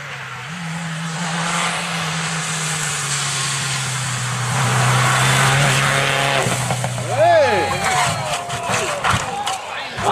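Rally car engine running hard at a steady high pitch, getting louder as it comes close, then dropping away as the car leaves the road. A voice cries out about seven seconds in, followed by a run of knocks and thuds as the car crashes and rolls in the grass.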